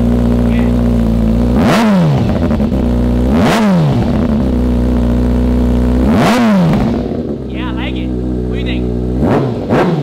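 A 2019 Kawasaki ZX-6R's 636 cc inline-four idling through a newly fitted aftermarket exhaust and blipped four times: each rev rises quickly and drops back to idle, the last near the end. The note is deeper with the new exhaust.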